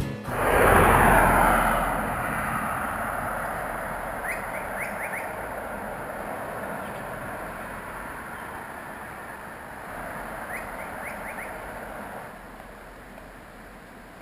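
A rushing noise swells about a second in and slowly fades, with two short runs of quick, rising whistled bird chirps, one a few seconds in and one near the end.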